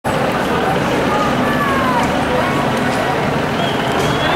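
Distant, indistinct voices over a steady roar of background noise that echoes around a large, mostly empty stadium.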